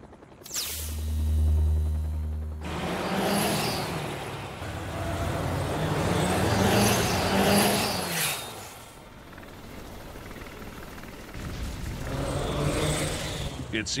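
Machine and vehicle sound effects: a steady low hum for about two seconds, then a louder stretch of engine-like noise that rises and falls, easing off about nine seconds in and building again near the end.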